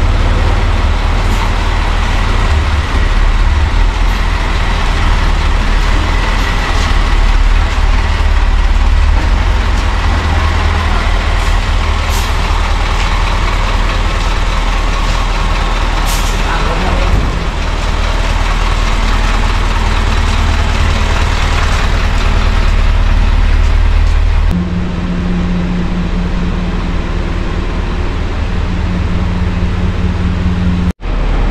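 Isuzu medium-duty truck's diesel engine running steadily as the truck creeps forward, with two brief sharp hisses in the middle, typical of air-brake releases. Near the end the engine sound drops back and a steadier, lower hum takes over.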